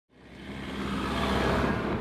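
A four-wheel-drive vehicle driving on a dirt track, with engine and tyre noise. The sound fades in and builds, then stops abruptly.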